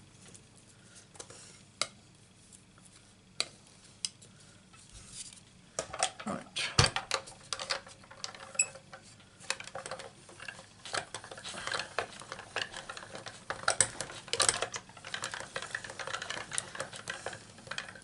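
Hand-cranked die-cutting machine being turned, with a steady crackle of clicks and grinding as the acrylic cutting plates holding a metal butterfly die roll through the rollers. This starts about six seconds in after a heavy knock. Before that there are a few soft clicks of tape and paper being handled.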